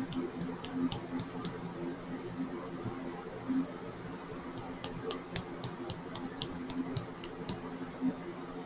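Light fingertip taps on a small plastic funnel set in a nail polish bottle, knocking mica powder down into the polish: a few sharp ticks early, then a quicker run of about four or five ticks a second about five seconds in.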